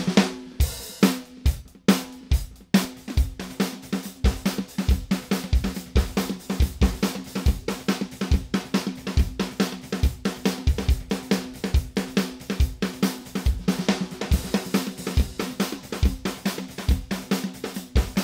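Recorded drum track with snare, kick and hi-hats played through the u-he Satin tape-emulation plug-in in tape-delay mode, the hits trailed by delay repeats. The playback stops briefly twice in the first three seconds, then runs as a steady beat.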